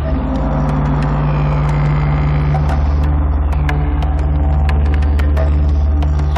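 A low, steady drone from a dramatic TV background score, held without a break, with a few faint scattered clicks over it.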